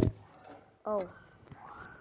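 A knock as the filming camera slips and bumps at the very start, followed by two short vocal exclamations.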